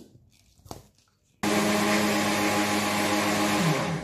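A couple of clicks as the clear lid is fitted on a steel mixer-grinder jar, then the mixer grinder's motor switches on about a second and a half in and runs steadily, blending the milkshake. Near the end its hum drops in pitch as it slows down.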